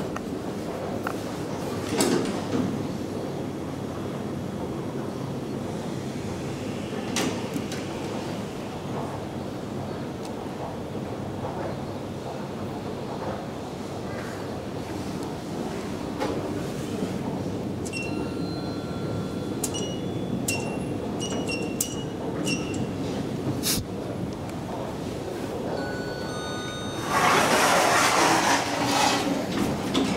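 Inside a machine-room-less traction elevator car: a steady hum while the car runs, with a few sharp clicks, a run of short electronic chime tones in the second half, and a louder burst of noise near the end.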